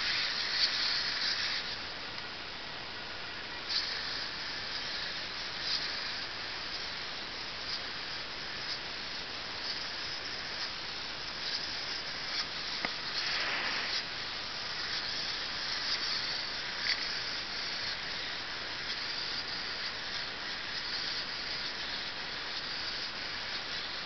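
The hobby servos of an 18-servo hexapod robot running as it walks: a steady high whirring hiss with a few faint clicks. About halfway through there is one brief swell that sweeps down and back up.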